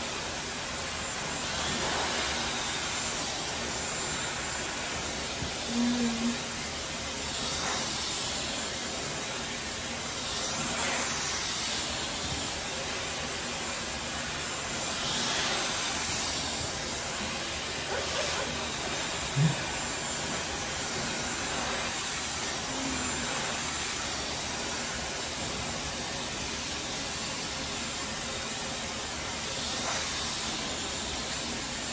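Handheld hair dryer blowing steadily on wet hair being brushed straight with a round brush, its hiss swelling and easing as it is moved along the hair. A brief low sound stands out about two-thirds of the way through.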